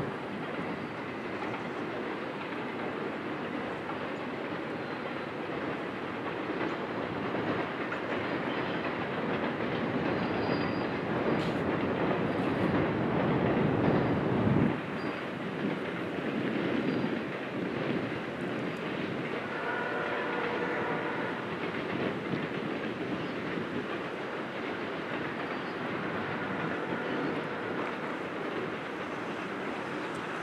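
Container cars of a long freight train rolling across a steel trestle bridge, with a steady rumble and clickety-clack of wheels on rail joints. The rumble swells to its loudest about halfway, then drops suddenly. About two-thirds of the way through a brief ringing tone sounds, like a wheel flange squeal.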